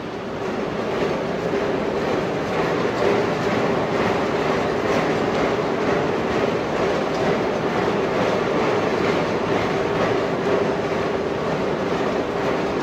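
Manual treadmill belt rolling over its metal rollers under jogging feet: a steady rumble with a faint hum, building up over the first second and then holding even.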